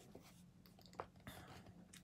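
Near silence: faint sniffing at an open plastic pouch of powdered shake, with one light crinkle of the pouch about a second in.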